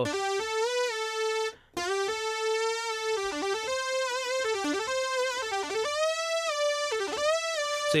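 Roland RD-88 stage piano playing a synth lead patch: a single-note melody, bent up and down with the pitch wheel between notes, with a short break about a second and a half in.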